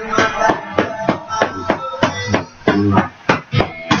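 Boxing gloves striking focus mitts in quick succession, about three smacks a second, over background music.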